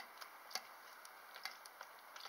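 Hens pecking at food in a steel bowl: irregular, sharp ticks of beaks striking the metal and the ground, about half a dozen in two seconds.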